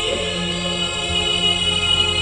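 Slow music of long, steadily held chords with a choir-like vocal sound.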